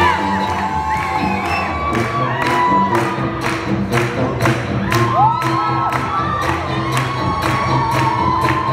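Brass jazz band with a sousaphone playing an upbeat tune: horns bending and sliding notes over a bass line, driven by a steady beat of about two strokes a second. A crowd cheers and whoops over the music.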